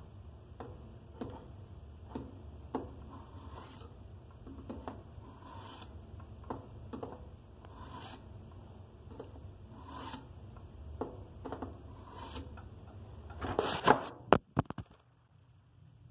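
Steel blade of a black-handled switchblade knife scraped in short strokes across a sharpener, about one stroke a second. Near the end comes a louder burst of clattering handling noise, after which it falls nearly quiet.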